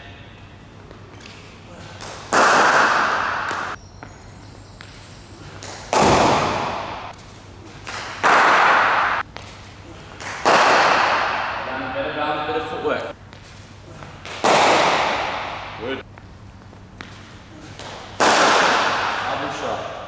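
Cricket bat striking the ball six times, a few seconds apart, each a sharp crack followed by a long echo round a large indoor net hall.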